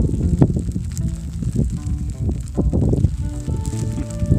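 Wind buffeting a phone microphone with a low rumble, and soft instrumental music with long held notes coming in about two seconds in.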